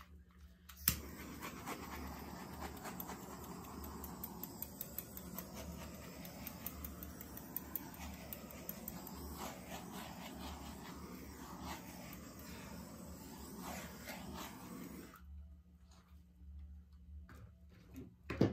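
A small handheld gas torch clicks alight about a second in and burns with a steady hiss for about fourteen seconds, then shuts off suddenly. It is being passed over a wet acrylic pour to pop surface air bubbles.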